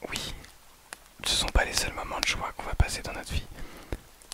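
A man whispering right into the microphone, a short breath at the start and then about two seconds of whispered French, with breath pops and small mouth clicks picked up close up.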